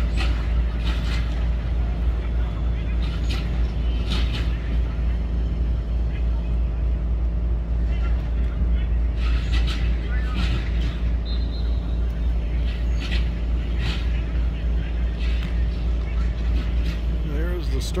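Practice-field ambience: scattered distant shouts and calls from football players and coaches over a steady low rumble.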